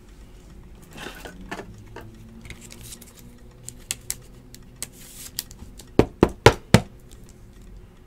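Clear hard plastic card holder being handled as a trading card is fitted into it: light rustling and ticks, then four sharp plastic clicks in quick succession, about a quarter-second apart, near the end.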